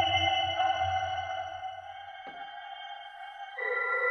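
Electroacoustic music played through a rotating cylindrical loudspeaker: sustained ringing tones over a low drone. The drone fades out about halfway, a faint click follows, and a new set of higher ringing tones comes in near the end.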